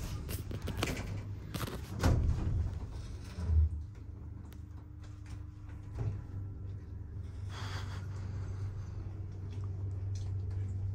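Otis 2000 hydraulic lift: the doors finish closing with a few clunks and knocks, a low thump follows, then the car travels upward with a steady low hum.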